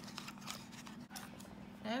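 A small paperboard product box being handled and a small plastic spray bottle slid out of it: a few light scrapes and taps spread through the moment.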